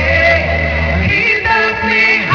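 Gospel music: a vocal group singing long held notes in harmony. The low bass drops out about a second in.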